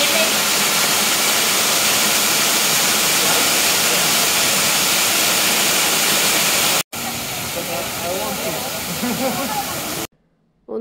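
Waterfall seen from behind, its curtain of water falling just past the path in a loud, steady rush. About seven seconds in the sound breaks off and a quieter rush of falling water follows, with faint voices over it.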